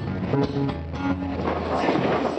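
Acoustic guitar strummed and picked as song accompaniment, with a low bass note held in the middle.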